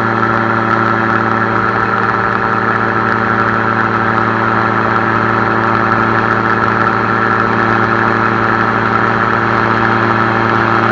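Air Command gyroplane in flight, its engine and pusher propeller running at a steady, unchanging pitch.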